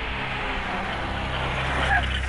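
A jeep's engine running steadily as it drives in, a low even hum with a noisy rush over it.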